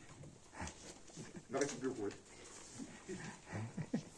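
Faint voices talking away from the microphone, with a few soft knocks from a handheld microphone being handled and passed over.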